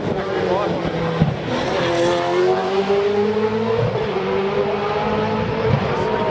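Supercars race car V8 engines at a street circuit, with one engine note rising slowly for a couple of seconds as a car accelerates.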